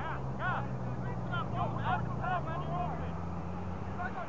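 Distant shouts and calls of rugby players across an open field during a stoppage, over a low steady hum that fades out shortly before the end.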